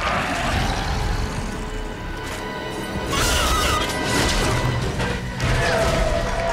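Dramatic film score mixed with heavy crashes and impact sound effects from a violent creature attack.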